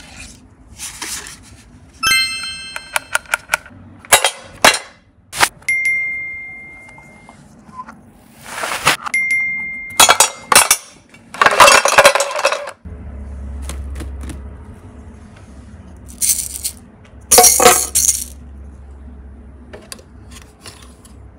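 A run of short clicks, knocks and rattling scrapes from handling small plastic toys. Brief chime-like ringing tones come in a few seconds in and twice more before the middle.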